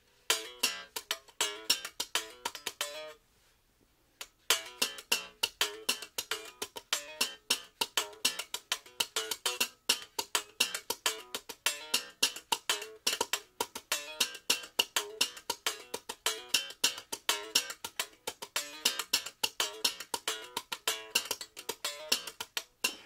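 Strandberg Boden NX 7 headless seven-string electric guitar played in a quick, steady run of short, choppy notes. The playing stops about three seconds in for about a second, then picks up again and keeps the same rhythm.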